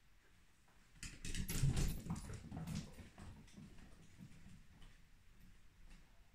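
A small puppy scrambling down and pattering away, its paws clicking and thumping on the floor. The steps are loudest and busiest between one and three seconds in, then thin to a few lighter taps.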